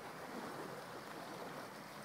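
Small sea waves lapping and washing against rocks and a stone sea wall: a steady, even wash of water.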